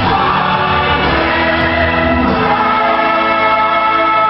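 Church choir singing a worship song, holding long notes, with the chord shifting about halfway through.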